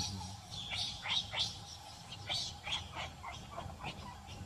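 A run of short, high-pitched animal chirps, several a second and irregular, over a faint steady hum.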